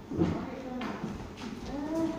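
Indistinct voices of people in a large room, with a short voice gliding up and down near the end and a few light knocks.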